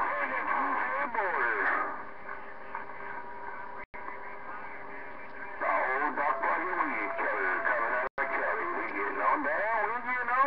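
CB radio receiver playing distant, garbled voices over a steady hiss, with whistling tones in a quieter stretch between transmissions. The audio cuts out for an instant twice.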